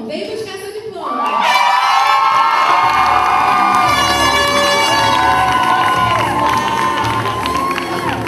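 Graduation audience cheering and shouting, many high voices screaming and whooping together; it swells sharply about a second in and stays loud.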